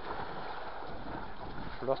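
Children splashing and swimming in an outdoor swimming pool: a steady wash of water noise with faint voices in the background.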